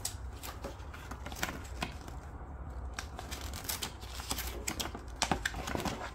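Folded paper instruction leaflet being handled and unfolded: crisp paper rustles and crackles, busier in the second half, over a low steady hum.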